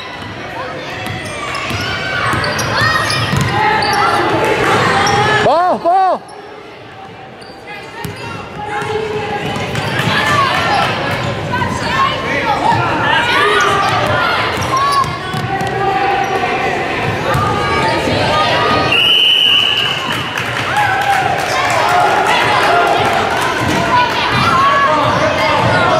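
Basketball bouncing on a hardwood gym floor during a youth game, amid continuous shouting and chatter from players and spectators in a large hall. About four-fifths of the way through, a steady high referee's whistle sounds for about a second.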